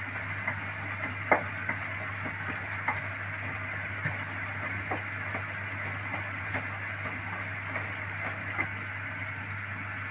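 Hotpoint Ariston front-loading washing machine turning a load of wet plush toys during its rinse cycle: a steady churning of water with a low hum and a few soft knocks.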